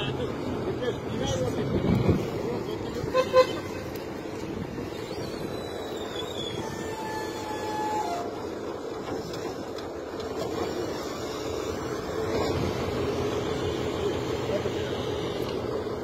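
Wheel loader's diesel engine running steadily close by, getting louder in the last few seconds as the machine works in. A few sharp clicks about three seconds in and a short thin tone about halfway through sound over it.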